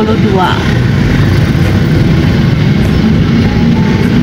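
Steady low rumble of road and traffic noise heard from inside a slowly moving car in dense motorcycle traffic on a wet road.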